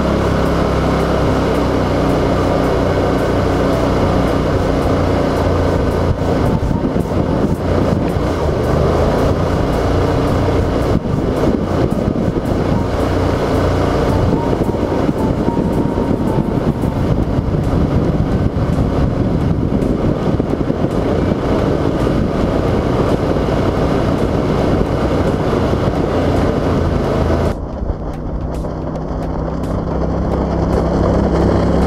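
Boat's Mud Buddy surface-drive mud motor running hard at speed, heard close up, with a loud hiss of spray from the prop's rooster tail over a steady engine drone. About two seconds before the end, the spray hiss drops away suddenly and only the lower engine drone remains.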